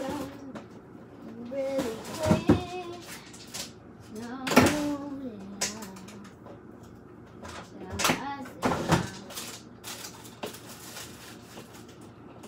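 Cupboard doors and kitchen items knocked about in a search, several sharp knocks and clatters about two, four and a half and eight to nine seconds in, with a young girl's voice in between.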